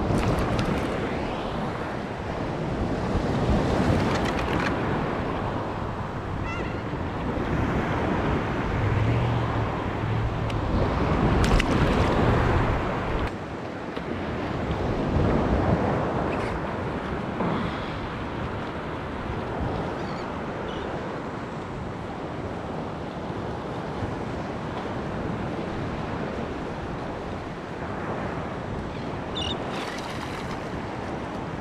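Ocean surf washing and sloshing around a wading angler, close to a camera held just above the water, with wind buffeting the microphone. The water swells louder now and then, most of all a little before halfway.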